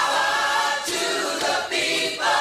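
Intro jingle of voices singing together in held chords, the chord changing about every second.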